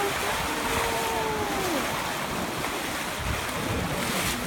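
Bow wave and water rushing along a sailboat's hull under sail, with wind buffeting the microphone. In the first couple of seconds a person's voice is heard in one long drawn-out exclamation that rises and then falls.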